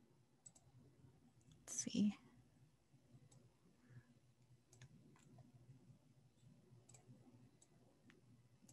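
Faint, scattered clicks of a computer mouse and keyboard over quiet room tone, with one short spoken word about two seconds in.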